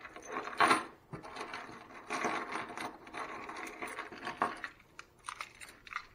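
A ring of keys jangling and rattling as it is handled, with a few sharp metallic clicks near the end as a key is brought to a fire alarm pull station's lock.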